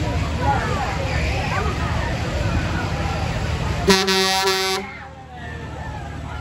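Riders screaming over the steady low rumble of a Parkour spinning-arm fairground ride, then about four seconds in a loud horn blast of about a second. As the horn ends the rumble drops away and the sound goes quieter before the voices pick up again.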